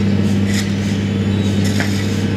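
Diesel engine of a hydraulic demolition excavator running with a steady low drone, while its raised demolition grab is held aloft. Two brief higher-pitched sounds come through, about half a second in and near the end.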